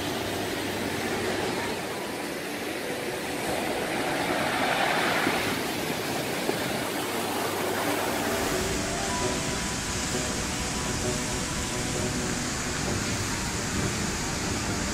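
Steady rush of turbulent, muddy floodwater and surf, a constant noise with no pauses and a change in its character about two-thirds of the way through. Faint background music sits underneath.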